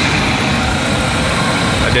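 A 1994 Ford Ranger's 4.0-litre V6 idling steadily with the hood open, a continuous low rumble.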